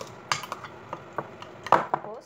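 A metal fork clinking against a glass dish while mixing canned tuna, a few sharp clinks, the loudest near the end.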